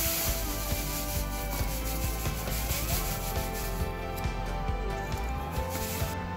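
Sand pouring from a plastic bag into a plastic champagne cup, a steady grainy rush that thins out after about four seconds, with background music underneath.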